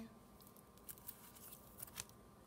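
Near silence with a few faint paper ticks as a paper flash card is moved off the top of a stack, the last one just before the end.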